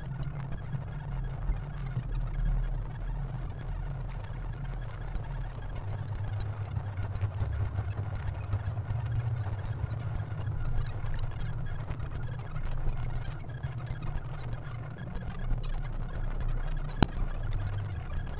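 Experimental glitch electronic noise: a dense low rumble of stepwise-shifting bass tones under a haze of scattered crackling clicks, with one sharp click near the end.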